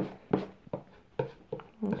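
Palette knife mixing acrylic paint on a palette: short scraping taps, about three a second.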